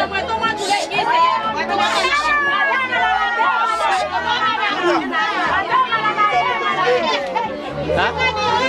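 A group of people talking over one another: lively, overlapping chatter of several voices, with no pause.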